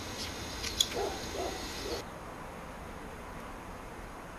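Felt-tip permanent marker writing on a battery's plastic label, giving a few short squeaks in the first two seconds; after that only a faint steady background is heard.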